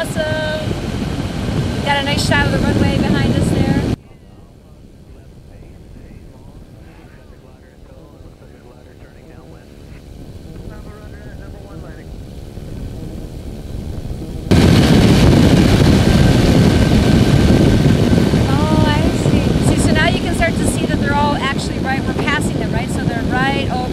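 Engine, propeller and wind noise of an open-cockpit weight-shift ultralight trike in flight. The noise drops suddenly to a much quieter level about four seconds in and jumps back to full loudness about two thirds of the way through.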